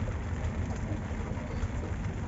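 Steady hiss with a low rumble underneath and no distinct events.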